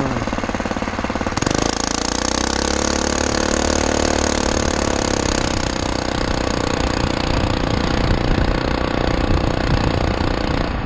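Small single-cylinder 212cc engine running at high revs under full throttle at speed, a rapid, steady hammering drone. About one and a half seconds in the engine note settles, climbs slightly, then holds steady.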